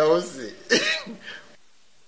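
A character's voice speaking briefly in short vocal sounds, stopping about one and a half seconds in, after which it goes quiet.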